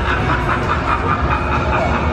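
Outdoor crowd ambience while walking: a steady low rumble with faint voices behind it.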